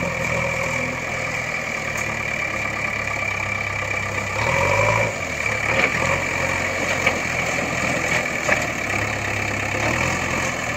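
Engine idling steadily, with a few short sharp clicks along the way.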